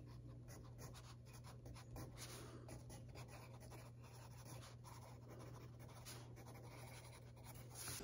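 Wooden pencil writing on notebook paper: faint, quick scratching strokes over a steady low hum.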